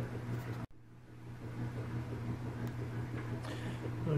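Steady low hum of room tone. The sound drops out abruptly for a moment less than a second in, at an edit cut, then the same faint hum carries on.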